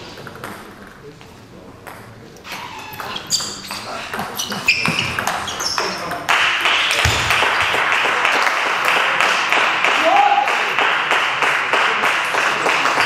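Table tennis rally: the ball clicking off bats and table, with shoes squeaking on the hall floor. About six seconds in, clapping breaks out as the point ends and keeps going.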